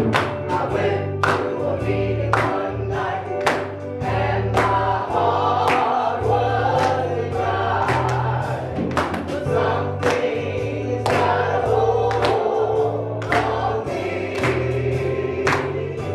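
Live gospel worship song: an electronic keyboard holding sustained bass notes, a drum kit keeping a steady beat with cymbal hits, and singing voices over the top.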